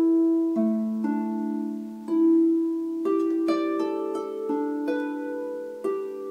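Double-strung harp plucked by hand: single notes and two- or three-note chords ring on into one another, a new pluck about every half second to a second, playing 1-5-8 patterns that step downward.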